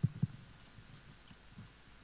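Two dull low thumps close together near the start, typical of a handheld microphone being handled through the PA, then faint background hum.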